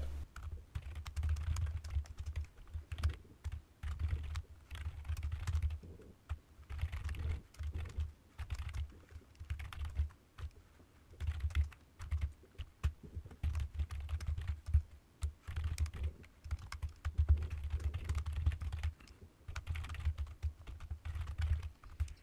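Typing on a computer keyboard: irregular runs of keystrokes with short pauses between them, each key giving a click over a dull low thud.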